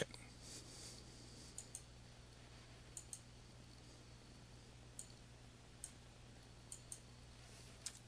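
Faint, scattered clicks of a computer mouse, several in quick pairs, over a low steady hum.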